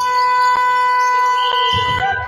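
Gym scoreboard horn sounding one steady blast of about two seconds, starting and stopping abruptly.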